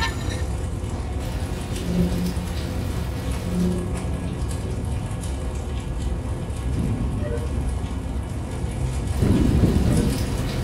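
Experimental noise music: a dense, steady low rumble with a hiss above it, two short hums in the first few seconds, and a louder swell near the end.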